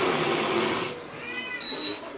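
Domestic cat hissing: a loud, breathy hiss lasting about a second, given when the cat is startled by a loud noise. A short pitched cry that rises and falls comes about a second and a half in, then a brief high tone.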